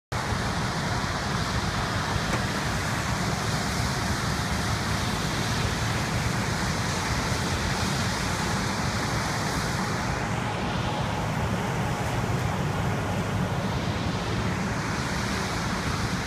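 Steady roadside noise of passing highway traffic mixed with the low, even rumble of a heavy engine running.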